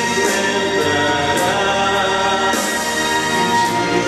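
Male solo voice singing a Portuguese gospel song into a microphone over orchestral accompaniment.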